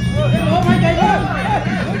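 Traditional ringside fight music: a wind instrument plays a wavering, ornamented melody over a steady low drone.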